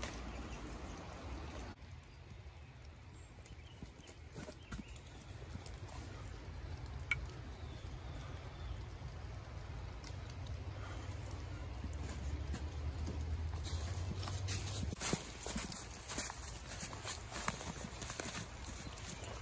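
Footsteps crunching through snow and dry leaves, a run of steps in the last few seconds, over a steady low rumble with a few scattered clicks earlier on.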